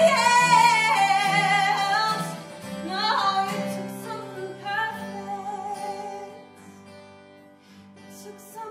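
A woman sings a ballad solo with vibrato over backing music. She belts long notes at the start and again about three seconds in, then grows softer and fades toward the end.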